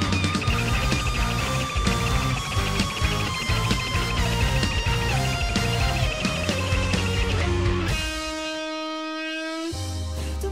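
Live rock band instrumental break on electric guitars, bass and drums, with a guitar line stepping down in pitch. About eight seconds in, the drums and bass drop out and a single held note rings on alone until the band comes back in.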